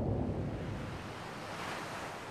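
Cinematic sound effect of an animated outro: a deep rumble fading away into an airy, windy hiss.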